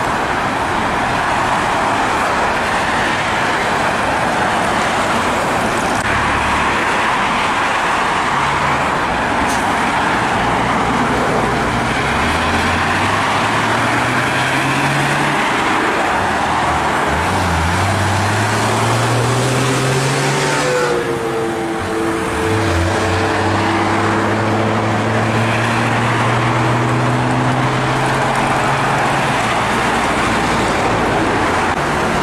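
Steady highway traffic noise from passing cars and trucks, with tyre noise throughout. In the second half one vehicle's engine rises in pitch twice, dropping between as it changes gear, then holds a steady note.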